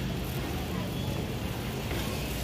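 A shopping cart rolling across a concrete floor, over a steady low hum and rumble.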